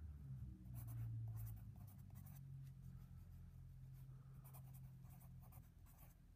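Pencil writing on a paper worksheet: a run of faint, short scratching strokes as a few words are written, over a low steady hum.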